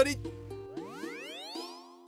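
A cartoon-style rising swoop sound effect lasting about a second, over background music holding steady notes.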